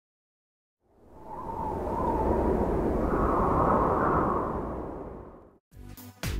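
An intro whoosh sound effect: a rush of noise fades in about a second in, swells and holds, then fades away just before the end. Electronic music starts right at the close.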